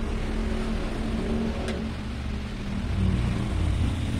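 Low, steady rumble of a running engine, growing a little louder about three seconds in, with a faint click near the middle.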